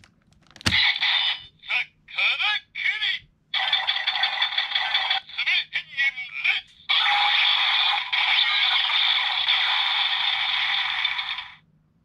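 Karakuri Hengen toy weapon's electronic claw-mode shuriken finisher sound: a click as the shuriken is spun, then several short sound effects and a long steady finishing-attack sound starting about seven seconds in, which cuts off shortly before the end.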